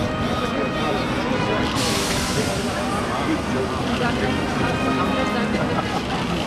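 People talking indistinctly over steady tram running noise. A sudden hiss starts about two seconds in and fades over the next couple of seconds.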